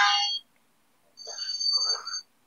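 Short electronic tones of the ringtone kind. A chord of steady pitches cuts off just after the start, and about a second later a second, higher pair of steady tones sounds for about a second.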